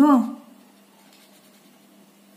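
Faint scratching of a felt-tip pen scribbling on paper as a small circle is coloured in.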